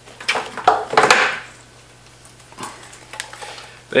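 Clicks and knocks of a guitar distortion pedal and its cable being handled, with a short rustle about a second in, then a quieter stretch with a few faint knocks. A steady low hum runs underneath.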